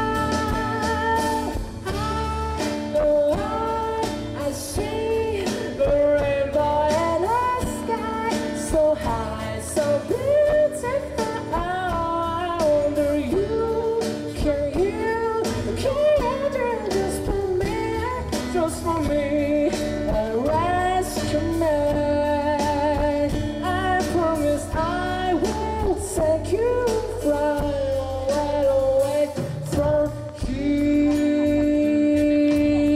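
A man singing a melody while strumming an acoustic guitar, in a solo live performance.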